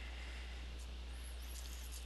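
Steady low electrical hum with a faint even hiss: background room tone, with no distinct sound from the pliers work.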